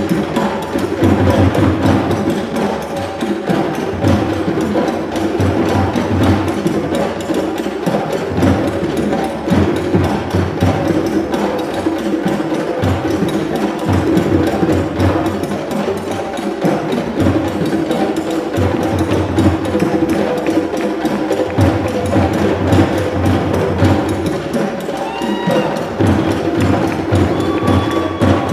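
A group of djembe-style hand drums playing a fast, continuous African dance rhythm. A few short rising high-pitched tones sound over the drumming near the end.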